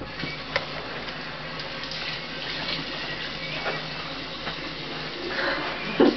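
Bathroom sink faucet running steadily while hands splash water onto a face under the stream, with a few short splashes over the flow.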